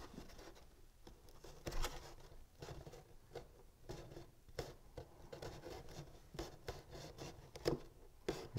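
Fingers pressing and smoothing a thin glued paper strip onto a paper box: faint paper rustling with scattered small ticks, two sharper ones about two seconds in and near the end.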